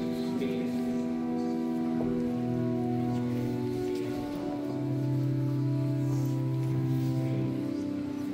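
Organ playing slow sustained chords that change every second or two, with a low bass note held through the second half.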